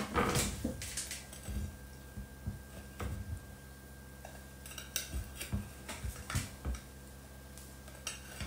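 A knife and a cake server tapping and scraping against a ceramic tart dish: scattered short clicks and soft knocks as a slice of soft, moist tart is cut free and worked out of the dish.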